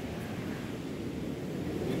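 Steady outdoor ambient noise: an even rushing hiss with no distinct sounds in it.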